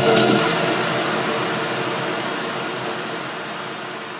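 A techno track's beat cuts out just after the start, leaving a noisy, droning wash with faint held tones that fades down steadily: the tail of the track as it ends.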